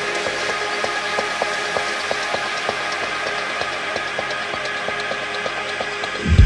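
Techno playing with its kick and bass stripped out, leaving a thin loop of regular clicking percussion, about three clicks a second, over a steady high buzzing texture.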